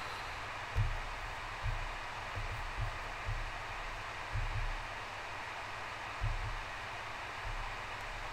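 Steady background hiss with a few soft, low thuds at irregular moments.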